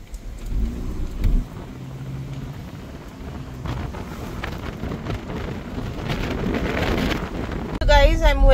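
Street traffic and wind on the microphone: a steady low rumble, louder for a moment about a second in, with a wider rushing noise that swells through the second half.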